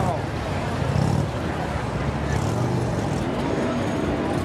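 Motorcycle engines running on a crowded rally street: a low rumble that swells about a second in and again a little later, under the chatter of the crowd.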